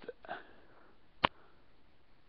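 A short faint sniff or breath, then a single sharp click about a second in.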